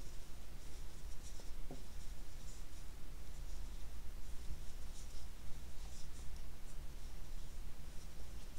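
Crochet hook working cotton yarn: soft, irregular scratchy rubbing as the hook draws loops through double crochet stitches.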